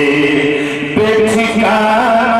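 A solo male voice chanting a naat into a microphone, holding long notes that slide and bend in pitch, with a short break about a second in.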